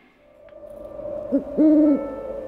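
An owl hooting: a short hoot about 1.3 seconds in, then a longer, held hoot near the end, heard over a faint steady tone.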